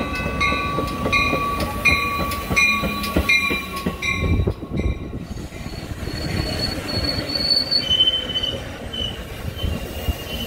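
Metra bilevel commuter coaches rolling slowly past at close range into the station, with a rumble of wheels and trucks. A grade-crossing bell rings in even strokes, about three every two seconds, through the first half; then the train's wheels squeal high and thin as it slows for the stop.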